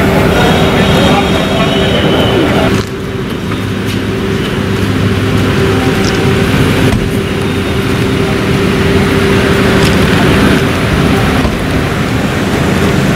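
Car engines running close by, steady and low, with people talking in the background. The sound changes abruptly about three seconds in.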